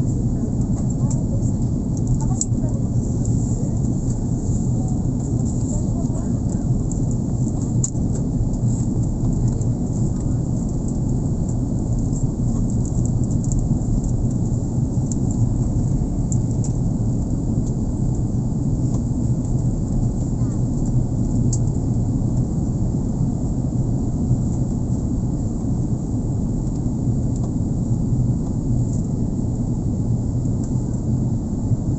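Steady low rumble of a jet airliner's engines and airflow heard from inside the passenger cabin, while the plane is on its descent.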